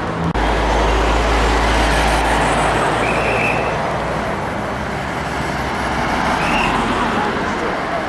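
Road traffic noise with a steady hiss and a deep low rumble that starts suddenly just after the beginning and fades out about six seconds in.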